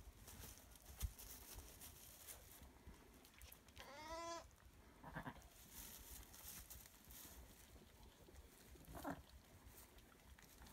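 A sheep bleats once, briefly, about four seconds in; the rest is near silence, with two fainter short sounds later on.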